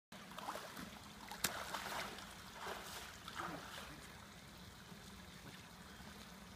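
Faint lapping and trickling of swimming-pool water around a floating foam mat, with a sharp click about one and a half seconds in.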